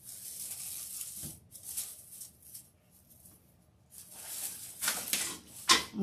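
Plastic deco mesh and raffia rustling and crinkling as a wreath on its wreath board is turned over, in two spells with a short quiet gap between them. A sharp knock near the end.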